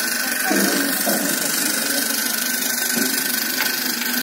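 Small battery-powered DC motor of a homemade grinder running steadily, with a constant high whine.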